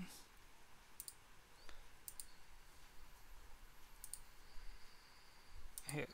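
Computer mouse clicks: three quick pairs of sharp clicks, about a second apart and then two seconds apart.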